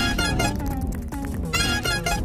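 Instrumental music led by plucked guitar over a steady bass line, with a bright high figure that comes at the start and again near the end.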